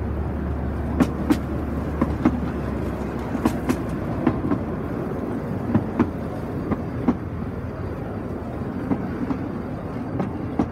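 Miniature railway coaches and flat wagons rolling past on the track: a steady rumble of wheels on rail, with irregular sharp clicks and knocks as the wheels cross the rail joints.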